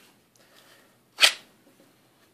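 A single short scraping snap about a second in, as a pistol is pulled out of a pink Kydex inside-the-waistband holster with two fingers.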